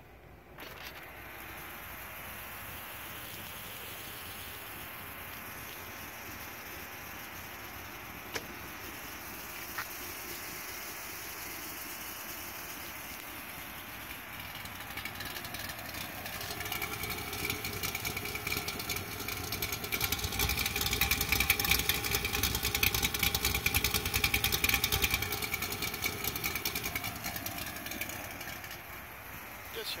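2009 Corvette Z06's 7.0-litre LS7 V8 idling with a steady pulsing exhaust note. It is faint at first, grows much louder from about halfway through and is loudest close up at the quad exhaust tips, then fades near the end.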